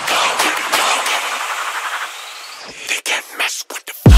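Build-up section of an electronic trap track: the bass drops out, leaving a noisy wash that slowly fades, with a short rising sweep about two seconds in. In the last second the sound breaks into rapid stuttering cuts.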